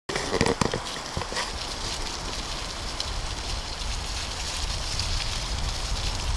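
Bicycle tyres rolling over dry fallen leaves on a dirt trail, a steady crackle with small ticks, over a low rumble of wind on the microphone. A few sharp knocks in the first second.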